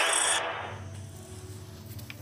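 TV news 'Breaking News' sting: a loud, noisy hit that dies away over about the first second, leaving a faint low hum and a few soft clicks.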